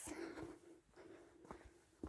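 Near silence with faint rustling and a few soft footsteps on grass and dirt.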